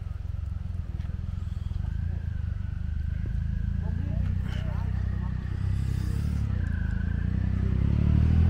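Triumph Rocket 3's 2.3-litre three-cylinder engine running low as the motorcycle approaches, growing steadily louder toward the end.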